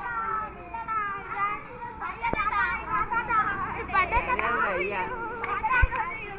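A group of children talking and shouting excitedly all at once, their voices overlapping and growing busier from about two seconds in. A couple of dull knocks cut through, the louder one near the end.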